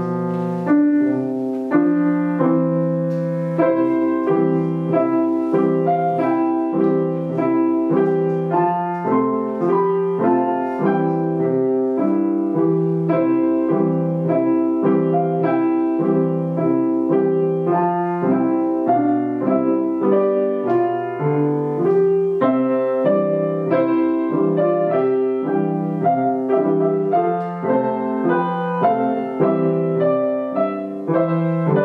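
Grand piano played four hands: a steady, regularly pulsing low accompaniment under a higher melody line.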